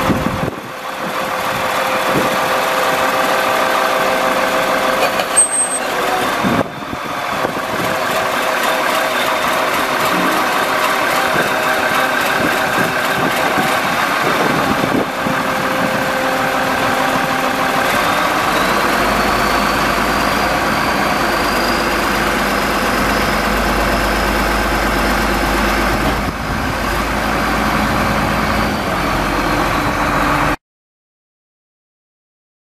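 Diesel engine of a 2002 Volvo 730 VHP motor grader idling steadily. A faint high whine rises in pitch and then holds from a little past the middle.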